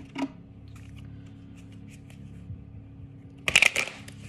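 A deck of oracle cards being handled and shuffled: a short, dense burst of card riffling near the end, after a quiet stretch with a low steady hum.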